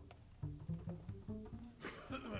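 Upright double bass plucked softly in a quick run of single low notes, loose noodling between takes in the studio.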